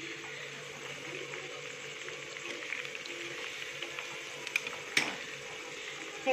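Chicken pakoras deep-frying in hot oil in a kadhai: a steady sizzle of bubbling oil, with a couple of sharp clicks near the end.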